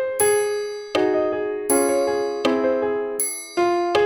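Computer playback of a song's melody and piano accompaniment in bright, bell-like piano tones, notes struck on a steady beat of about 80 a minute, each dying away before the next.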